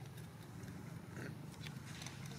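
Faint macaque sounds close by: scattered small clicks and movement over a steady low hum.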